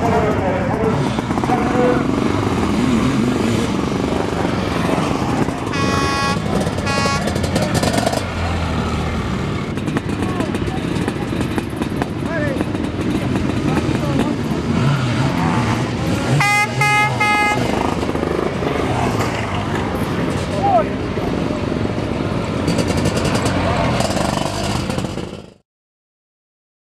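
Sidecar motocross outfits' engines running hard on the track, with a horn sounding in short blasts about six seconds in and again around sixteen seconds. The sound cuts off sharply just before the end.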